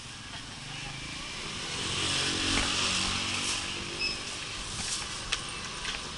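A motorcycle passing in the street, its engine note swelling to its loudest about two to three seconds in and then fading. A short high beep about four seconds in.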